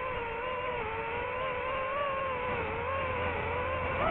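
Multirotor drone's motors and propellers whining steadily, the pitch wavering up and down as it manoeuvres.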